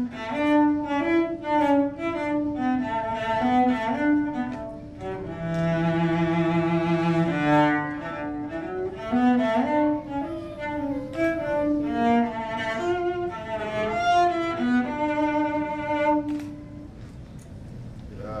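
Solo cello playing a bowed melodic passage of moving notes, with one longer note held with vibrato near the middle; the playing stops about a second before the end.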